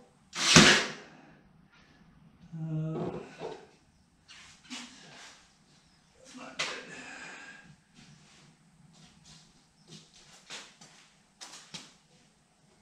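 Cordless brad nailer firing brads through plywood into a wooden frame: one loud, sharp shot about half a second in, followed by several fainter knocks and clicks.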